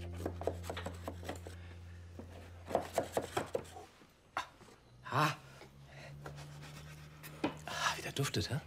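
A knife scraping around the inside of a metal loaf tin, then a cluster of quick knocks as the tin is tipped and tapped to turn the baked cake out onto a wooden board. Faint background music fades out about four seconds in.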